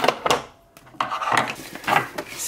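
Makeup products and brushes clattering and rubbing as they are picked out of a wooden drawer and set down on a wooden desk: a few short knocks and scrapes at the start, around one second in and near the end.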